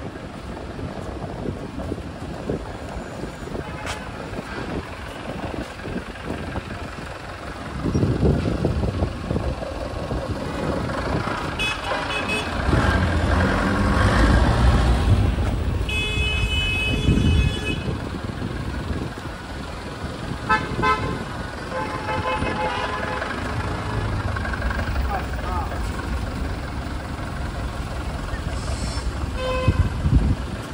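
City street traffic: engines running and tyres on the road, with a deep engine rumble swelling for several seconds in the middle as a vehicle passes close. Car horns honk several times, the longest blast about halfway through.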